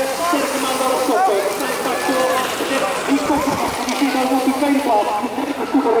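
A man commentating the race in Dutch over public-address horn loudspeakers, the speech carrying on with hardly a break.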